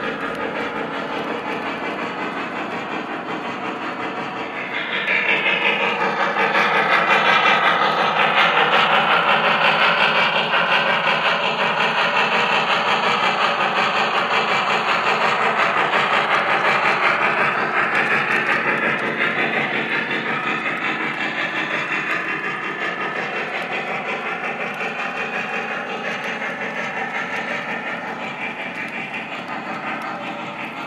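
Lionel VisionLine Niagara 4-8-4 O-gauge model steam locomotive and its passenger cars running along the layout track with a steady rolling, clattering sound. It grows louder about five seconds in as the train passes close, then slowly fades.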